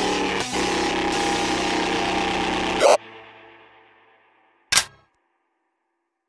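Electro track ending: dense electronic music stops on a loud final hit about three seconds in, its tail fading away, followed by one short, sharp burst of sound nearly two seconds later.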